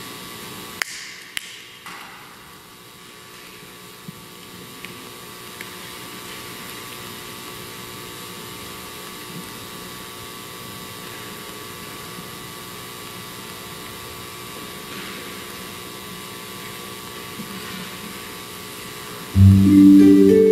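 Steady low hum of a quiet hall with a few faint clicks and knocks in the first several seconds as the chalice and altar vessels are handled. Just before the end an acoustic guitar comes in with loud strummed chords.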